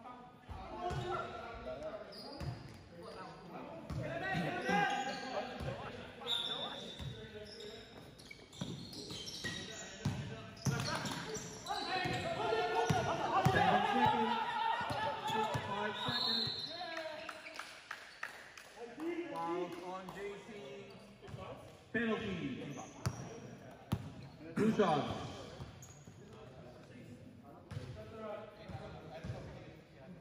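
Basketball bouncing on a hard indoor court as it is dribbled, mixed with indistinct shouting from the players, all echoing in a large gym hall.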